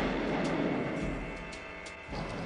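The rumbling, reverberant tail of a loud revolver shot, fading away steadily over about two seconds. Faint held music tones sit beneath it.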